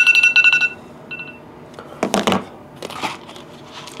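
Phone timer alarm beeping rapidly in a two-tone pattern for under a second, then one more short beep about a second in, marking the end of a timed minute. Two short noisy sounds follow, about two and three seconds in.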